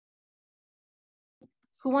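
Complete silence, then a couple of faint ticks and a person starting to speak near the end.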